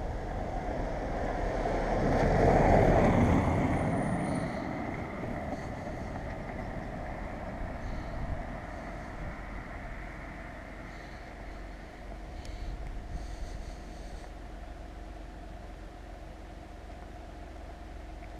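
A vehicle passing, swelling to its loudest about three seconds in and then fading away, over a steady low rumble.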